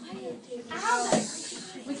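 Voices talking in the background, with a breathy hiss about a second in.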